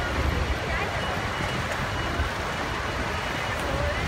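Steady low rumble of a bus engine idling and street traffic, with scattered voices of passers-by.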